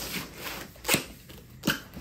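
Cardboard box being handled and opened on a metal table-saw top: cardboard rustling, with two short sharp knocks about a second in and near the end.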